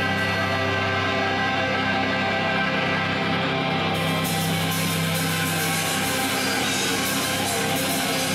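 Extreme metal band playing live: loud, held, droning distorted electric guitar chords, with a wash of cymbals coming in about halfway through.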